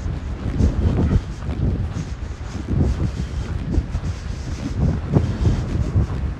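Wind buffeting the microphone in uneven gusts, a low noise that swells and falls throughout.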